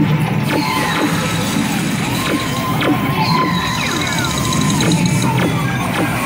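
Buzz Lightyear Space Ranger Spin ride audio: soundtrack music with frequent short laser-blaster zaps, falling electronic tones and clicks from the riders' laser guns and targets. A rapid high beeping comes about halfway through.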